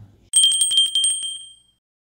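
A bell-ring sound effect, like a bicycle bell: a rapid string of about a dozen strikes over a steady ringing tone, lasting about a second and a half and fading out.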